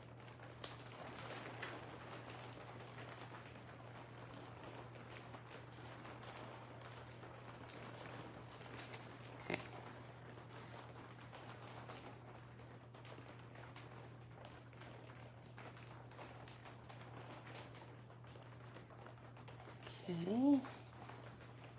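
Faint rustling of card stock and paper being handled and set down on a work mat, with a few light taps, the sharpest about halfway through, over a steady low hum.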